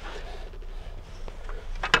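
Quiet shop room tone with a steady low hum and a few faint clicks of the board and blade guard being handled; the table saw is not running.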